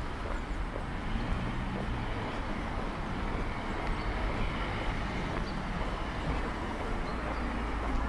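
Steady outdoor street ambience: a low rumble of road traffic with no single event standing out.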